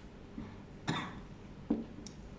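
A single short cough about a second in, over the light taps and strokes of a marker writing on a whiteboard.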